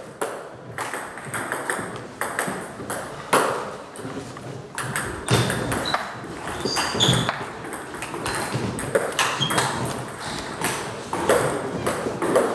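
Celluloid-type table tennis ball clicking repeatedly off rubber-faced rackets and the table top in a rally, the hits sharp and irregularly spaced. A few short high squeaks in the middle of the rally.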